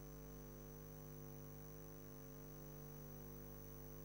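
Faint, steady electrical mains hum: a low buzz with a thin high whine above it, unchanging throughout.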